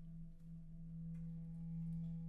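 Concert marimba holding a soft roll on one low note: a steady, nearly pure low tone that swells slightly toward the end, with a faint higher tone ringing above it.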